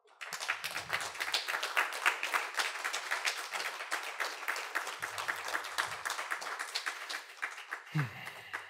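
Audience applauding: many hands clapping, starting all at once just after the start and thinning out near the end.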